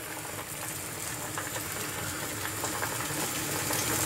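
Quail skin frying in a nonstick pan: a steady sizzle that grows louder as the skin heats.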